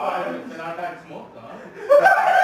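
A man chuckling, the laughter fading after about a second.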